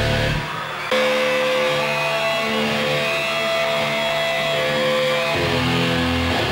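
Live rock band with electric guitar. About half a second in the heavy low end of the band drops out, leaving sustained, ringing guitar chords. The full low end comes back near the end.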